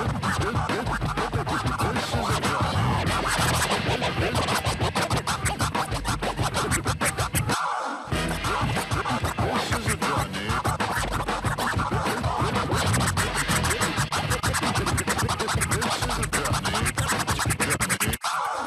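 Live DJ scratching on a DJ controller's jog platters over a hip hop beat, with rapid back-and-forth scratches. About seven and a half seconds in, the low end of the beat drops out for a moment before coming back.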